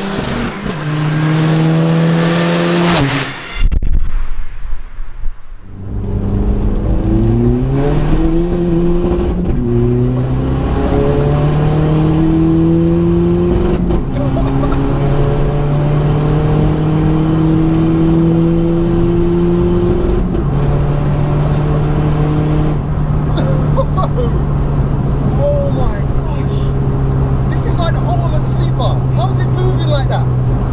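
Tuned 1.9 TDI Pumpe Düse four-cylinder diesel in a Mk4 VW Golf. It first runs past hard with its pitch rising. Then, heard from inside the cabin, it pulls hard through several upshifts, the pitch climbing in each gear and dropping at each change, before settling into a steady cruise.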